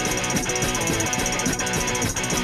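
A punk band playing live in a quieter passage led by electric guitar, with a fast, steady high tick running through it.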